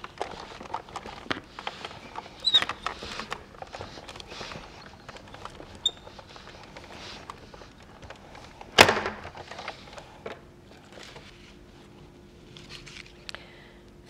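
Hand-cranked Ellison die-cutting machine turning, its rollers drawing a sandwich of cutting plates and an embossing folder through with a run of small clicks and knocks. One sharp knock, the loudest sound, comes about nine seconds in.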